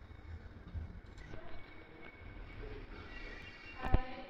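Outdoor background noise: a low, uneven rumble with a faint steady tone above it. A single sharp click near the end is the loudest moment.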